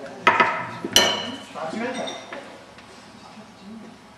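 A mixing bowl knocked against the work table and other kitchenware: two sharp clinks less than a second apart, the second ringing briefly, then a lighter clink.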